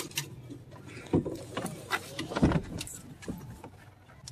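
Knocks and clunks of a car's rear seat being handled and folded down, with small metallic rattles among them; the two loudest thumps come about a second in and midway.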